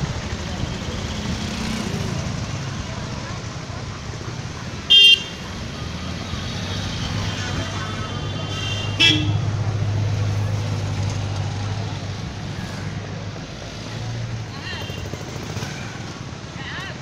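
Street traffic: a steady low engine drone with vehicle horns sounding over it. A short, very loud horn blast comes about five seconds in, a second sharp one about nine seconds in, and fainter beeps follow near the end.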